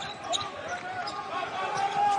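Basketball bouncing on a hardwood court under arena crowd noise, with one long drawn-out voice held over it from about half a second in.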